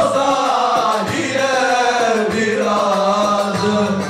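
A group of men singing a Çankırı folk song (türkü) together, loud and sustained, the melody wavering up and down over a steady low held note.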